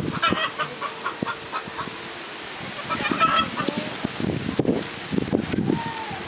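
Farmyard fowl calling, clucks and honk-like calls in several short bouts, the loudest about three seconds in and again between four and six seconds.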